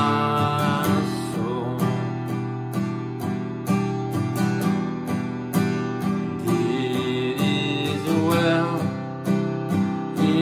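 Steel-string acoustic guitar strummed in a steady rhythm, working through the C, D and E minor chords of the song's bridge tag. A voice sings softly over it near the start and again near the end.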